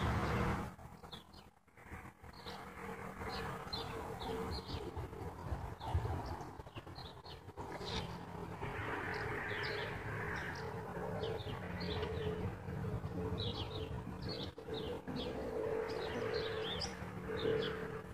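Birds chirping: short, falling calls repeated about once or twice a second, over a steady low hum.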